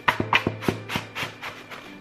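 Cardboard box being handled and its top flaps pulled open: a quick run of short taps and rubs on the cardboard, over background music.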